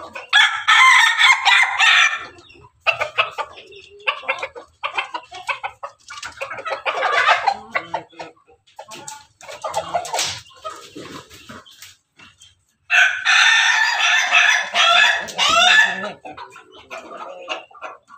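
Roosters from a pelung–bangkok–ketawa cross flock crowing: one long crow of nearly three seconds at the start and another long one about 13 seconds in, with shorter calls and clucking between.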